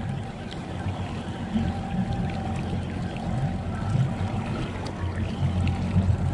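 A Penn spinning reel being cranked as a fish is wound in, over a steady low rush of wind and water around a drifting boat.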